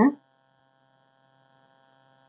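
Near silence, with a faint steady electrical hum in the recording.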